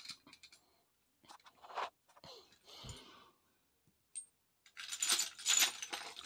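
Small light clicks and clinks of fidget spinners being handled, picked out of a plastic basket and set down on carpet, sparse at first and busier near the end.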